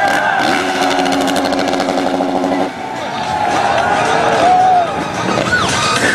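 Motocross bike engine running at a steady high speed for the first two and a half seconds or so, then dropping away under a voice over the loudspeakers.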